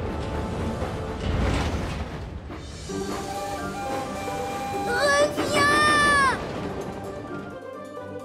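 Cartoon soundtrack with music. A rumbling run of steam locomotive and rolling sound effects gives way to a loud, high whistle lasting about a second, whose pitch sags as it cuts off.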